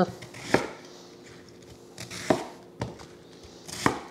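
Chef's knife cutting through a cabbage into chunks, striking a wooden cutting board: a few separate knocks, spaced a second or more apart.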